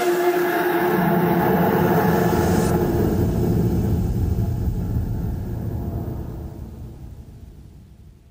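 The closing tail of a drum and bass track: the drums have stopped, leaving a low rumbling bass drone with sustained pad tones. Its high end cuts off about three seconds in, and it then fades out to near silence by the end.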